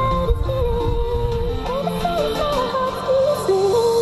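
A song with a gliding sung melody over a beat, played through a Bohm Impact Bluetooth speaker set to its outdoor mode, which cuts the bass for a louder, clearer sound.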